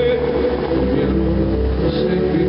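Bellagio fountain water jets spraying and falling back into the lake, with crowd voices and a steady low rumble. The show's music drops away to a brief lull.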